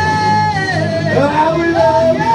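Live rock duo playing guitars under singing, the voice holding long notes that slide up and down in pitch.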